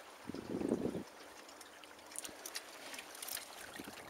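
Water washing and trickling against the hull of a small sailboat under sail, with a louder rush of water for about half a second near the start, then a faint wash with a few light ticks.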